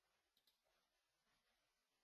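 Near silence, with two faint clicks close together about half a second in.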